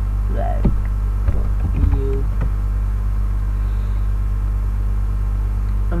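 Steady low electrical hum, the mains hum picked up on a computer recording, with a few faint clicks in the first two seconds or so.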